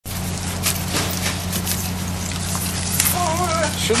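A steady low hum under a noisy background, with a few short knocks and clatters, and a man's voice starting near the end.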